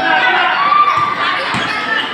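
Basketball bouncing on the court floor twice during a fast break, over shouting and chatter from the spectators.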